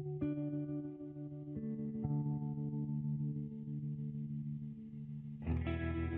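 Background music: sustained, effect-laden guitar chords that change every second or two, with a fuller, louder chord coming in near the end.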